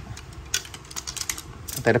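Light, irregular clicks and taps of carbon fishing-rod sections knocking against each other as they are picked up and handled.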